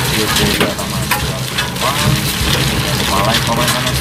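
A man's voice over a loud, steady rough noise dotted with many small clicks.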